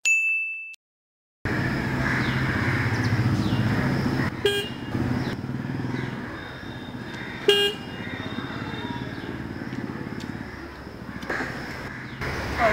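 A short ringing ding at the very start, then a second or so of silence. After that comes steady street background, with two short vehicle horn beeps about three seconds apart.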